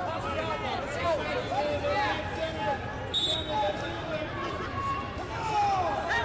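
Several voices shouting and calling over each other in a large, echoing arena, typical of coaches and spectators at a wrestling mat. A short, high referee's whistle blast comes about three seconds in, stopping the action for a caution.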